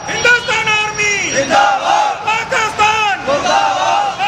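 A crowd of men shouting protest slogans together, one loud shout after another.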